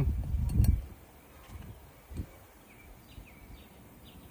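Brief handling noise and a couple of light clicks in the first second as a small flared copper tube end is picked off a metal flare gauge. After that, only faint background with a few soft bird chirps.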